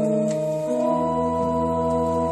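Electric keyboard on an organ sound playing sustained chords, with a new chord and bass note coming in about a second in.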